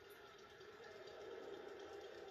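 Faint, steady background noise of a televised baseball game's stadium crowd, heard through a TV speaker while the commentary pauses.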